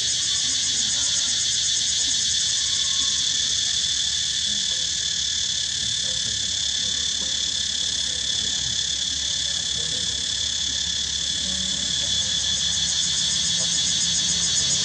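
Steady, high-pitched chorus of insects with a fast pulsing trill.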